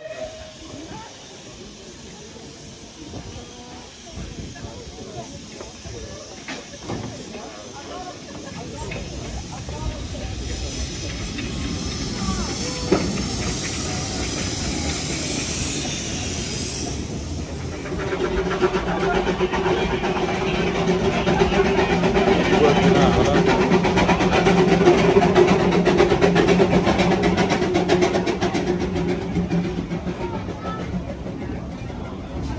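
Narrow-gauge steam tank locomotive hissing steam, the hiss building and then stopping abruptly about 17 seconds in. After that comes a louder steady hum with a low tone and a fast pulsing, which fades near the end.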